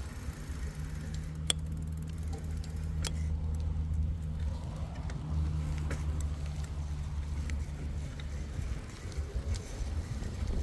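Steady low motor hum that holds one pitch and fades out near the end, with a few sharp clicks over it.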